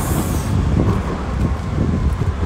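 Steady low outdoor rumble with a brief rustle near the start.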